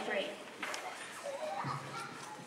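A girl's amplified voice ends a spoken word through a microphone, then a low murmur of children's voices and shuffling in a large hall, with a soft bump near the end.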